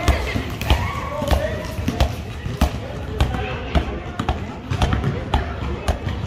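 Basketballs being dribbled on paving stones: an uneven run of sharp bounces, about two or three a second, with children's voices in the background.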